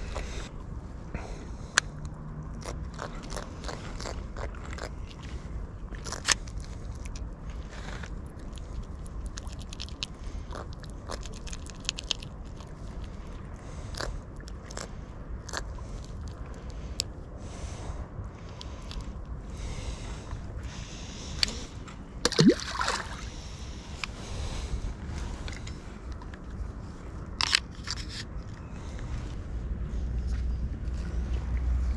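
Irregular clicks, scrapes and crunching handling noises close to the microphone, with a few sharper clicks and a louder burst of noise about 22 seconds in.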